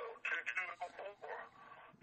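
Faint speech over a phone line, cut off above the voice band: the caller's own voice coming back to him down the line as an echo. It fades out near the end.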